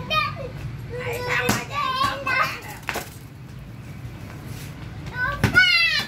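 A young child's high-pitched voice, calling out and squealing in several short spells while playing, with a few sharp knocks in between, the loudest near the end.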